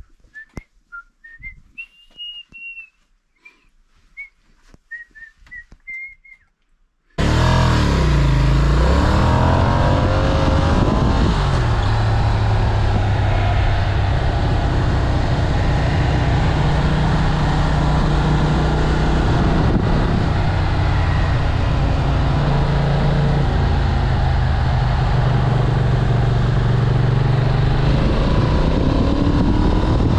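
A person whistling a tune, faintly, for about the first seven seconds. Then, after an abrupt cut, a Ducati Monster's V-twin engine is heard loudly and steadily as the motorcycle rides along, with wind noise. Its revs dip and climb again shortly after it comes in.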